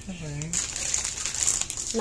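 A brief voiced sound near the start, then a run of crinkling and rustling until the end.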